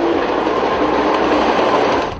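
Diesel locomotive passing close by at speed: a steady rush of engine and wheel noise, with the tail of its horn cutting off at the very start.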